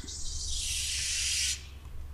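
A breathy hiss from a person's mouth close to the microphone, lasting about a second and a half and stopping abruptly.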